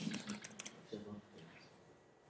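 Typing on a computer keyboard: a quick run of faint keystroke clicks in the first second, thinning out after that.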